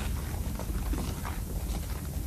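A grinding mill running: a steady low rumble with irregular knocks and clatters over it.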